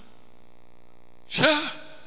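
A man's short breathy vocal sound, like a sigh or exhalation into a headset microphone, about a second and a half in, over a steady faint hum.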